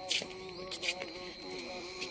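Insects buzzing: a wavering drone over a steady high whine, with two short scuffs in the first second.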